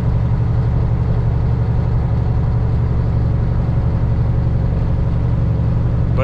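Peterbilt semi truck's diesel engine running steadily at highway cruise, heard inside the cab as a constant low drone with road noise.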